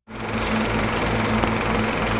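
Old film projector running: a steady whirring clatter with a low hum that starts abruptly after a moment of silence.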